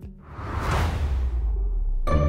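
A whoosh transition sound effect: a swell of airy noise that rises and fades within about a second, over a low rumble that builds toward the end.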